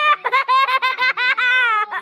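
A child's high-pitched giggling: a quick run of short laughs, about six or seven a second.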